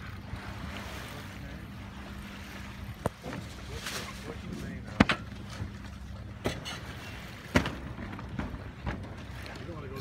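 Soft wash of water and wind around a J105 sailboat running downwind under spinnaker in light air, over a steady low hum. A few sharp knocks break through, the loudest about halfway in.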